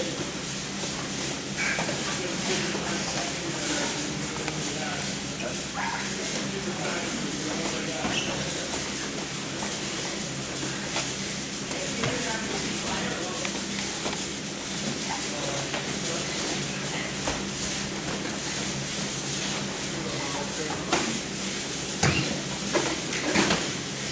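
Practice-room sounds of wrestlers drilling on foam mats: bodies, knees and shoes scuffling and shifting on the mat, with indistinct voices across the room and a steady low hum. There are a few sharper thumps on the mat near the end.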